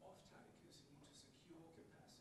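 Faint speech from someone away from the microphone: an audience member asking a question.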